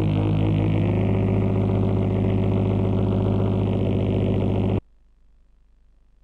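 Loud, steady electronic buzz with a low pitch and rich overtones, some of which shift slightly upward about a second in. It cuts off suddenly about five seconds in, leaving faint tape hiss.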